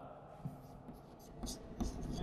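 Chalk writing on a chalkboard: a few short, quiet strokes as numbers are written.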